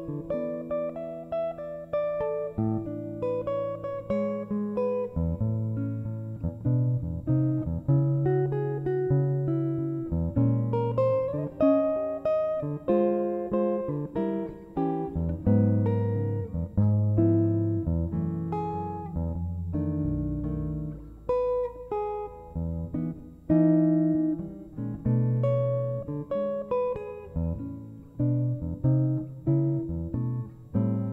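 Solo archtop jazz guitar played fingerstyle in chord-melody style: a slow ballad in E major, with bass notes, chords and melody plucked together and left to ring.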